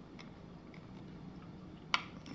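Faint clicks of a long screwdriver turning the screw that secures a Magpul PRS stock to the rifle's buffer tube, with one sharper click near the end.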